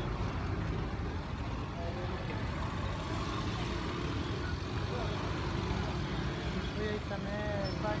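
Steady low rumble of motor scooter and motorcycle engines running close by, with people's voices mixed in.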